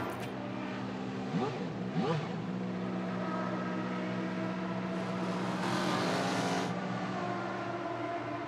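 Formula One race cars heard from a television broadcast: engines running, with two quick rising revs about a second and a half in and a swell of noise as cars sweep past around six seconds in.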